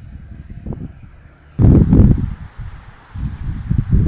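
Gusty wind buffeting the camera microphone: an uneven low rumble, with its loudest blast about halfway through.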